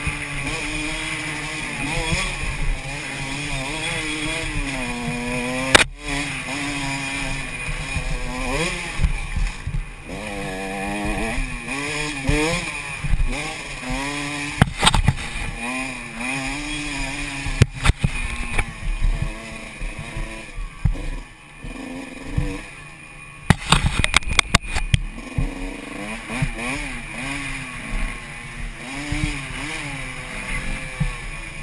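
Dirt bike engine on a single-track trail, its pitch rising and falling constantly as the throttle opens and closes and gears change. A few sharp knocks cut through it now and then.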